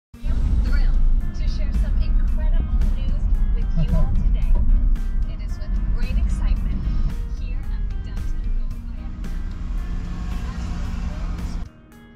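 Road and wind rumble of a car driving, heard from the front seat, mixed with music and indistinct voices. It cuts off sharply near the end, leaving quieter music.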